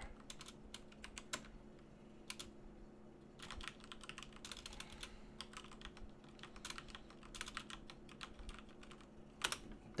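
Computer keyboard typing: irregular runs of quick keystrokes, including many backspace presses, with pauses between the runs. A faint steady hum runs underneath.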